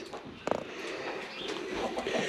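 Footsteps and rustling on the gravel-and-straw floor of a chicken house, with one sharp knock about half a second in.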